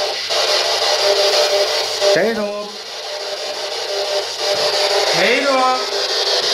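Spirit box radio sweeping through stations: loud, steady static with two brief voice-like fragments, one about two seconds in and one near the end.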